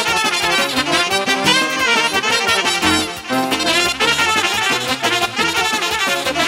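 Live wedding band playing a lively instrumental hora dance tune, a brass lead carrying a quick melody over a steady beat.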